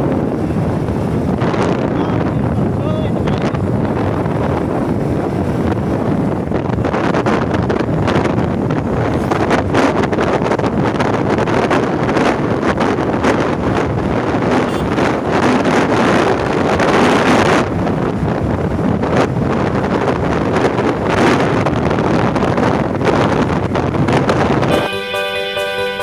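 Wind buffeting the microphone of a camera carried on a moving motorcycle, with road rush underneath. Near the end it cuts off suddenly, replaced by background music.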